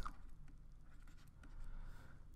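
Faint scratching of a pen stylus writing a word by hand on a tablet.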